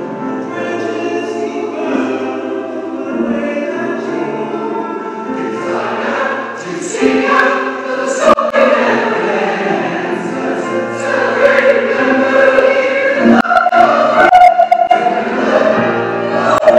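A choir of adult and children's voices singing a hymn together, growing louder in the second half.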